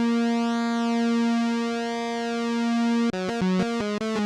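Arturia CS-80 V4 software synthesizer playing a dry lead patch of square and triangle oscillators with pulse-width modulation, noise, high-pass and resonant low-pass filtering. It holds one note whose tone sweeps slowly up and down, then plays a quick run of short notes about three seconds in.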